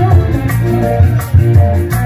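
Loud live band music through a PA speaker stack: a melody of held notes over heavy bass and drum beats.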